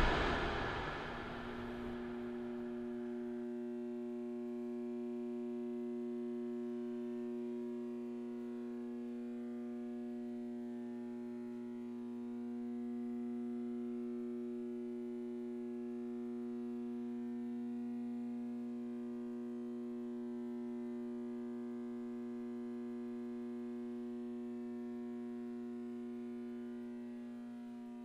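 A low sustained synthesizer chord held steadily, swelling gently now and then. Over the first second or two the tail of a louder hit fades out.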